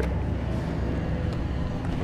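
Steady low electrical hum of arcade machines, with no distinct click or motor event standing out.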